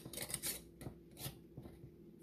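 Metal screw band being twisted onto the threads of a glass mason jar: a run of short, irregular scratchy rasps as the ring is tightened finger-tight over the lid.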